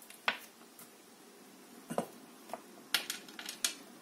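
A small spoon clinking against a clay bowl of tiny decorative stones as they are stirred and scooped: several sharp, irregularly spaced clicks, most of them in the second half.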